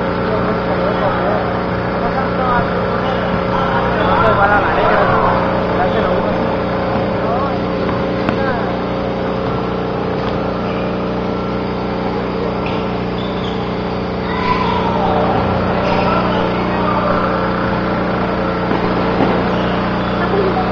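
Voices of people at a basketball court calling out, loudest about four seconds in and again past the middle, over a steady mechanical hum that holds a few fixed pitches.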